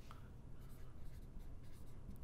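Marker writing on a whiteboard, faint strokes of the tip across the board.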